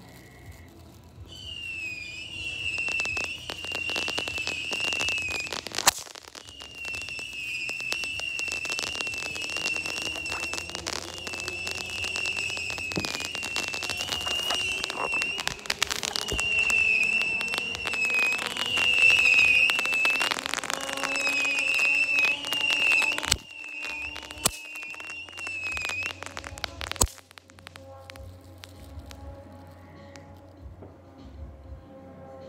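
A whistling firework giving a long, high, warbling whistle over dense crackling, with several sharp pops. The whistle breaks off briefly a couple of times and stops about 26 seconds in.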